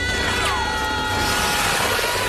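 Film action sound: a continuous rushing, tearing noise of a huge fabric banner ripping down the middle under two falling people, under orchestral score with held high notes and a falling glide about half a second in.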